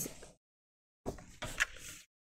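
The end of a spoken word, a moment of dead silence, then about a second of paper being handled and set down on a paper trimmer, with a few light clicks and knocks.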